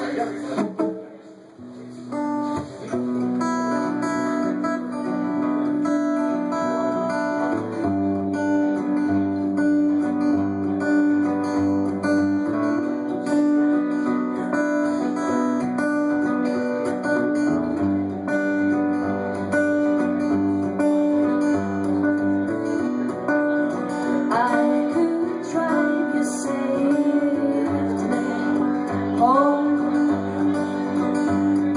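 Two acoustic guitars playing a song's instrumental opening together, with sustained, ringing picked chords. The playing drops away briefly about a second in, then carries on steadily.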